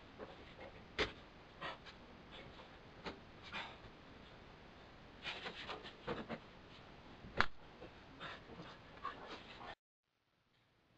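Scattered clicks and snaps of a staple gun and hand work on a convertible top's canvas at the front bow, the sharpest about a second in and a little past seven seconds. The sound cuts out just before the end.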